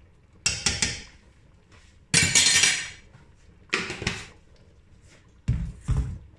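A metal teaspoon clinking against a stainless steel cooking pot and a container: a few sharp clinks about half a second in, a longer rattle about two seconds in, another clink near four seconds, and two quick strikes near the end.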